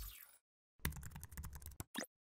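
Computer keyboard typing sound effect: a quick, faint run of key clicks, starting a little under a second in and lasting about a second, as text is typed into an animated search bar.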